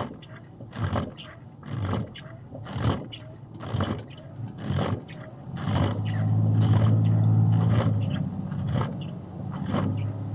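Box truck's engine running in the cab, growing much louder and heavier from about six seconds in as it pulls away under load. Windshield wipers sweep the glass with a short scraping stroke about once a second.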